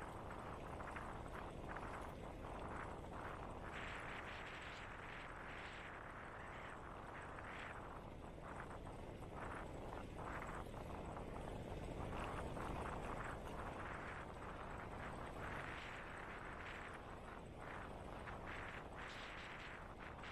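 Wind and rolling-tyre noise picked up by a bicycle-mounted GoPro's microphone while riding: a steady low rush whose upper hiss swells and fades unevenly.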